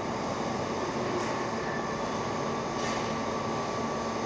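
Trumpf flatbed laser cutting machine cutting sheet metal: a steady hiss of the cutting process and running machine, with a faint steady high tone.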